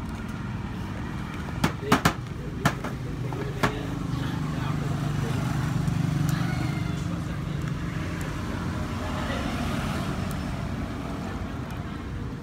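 Street traffic: a motor vehicle's engine rumbles past, building to its loudest about six seconds in and then fading, with background voices. A few sharp knocks come about two to four seconds in.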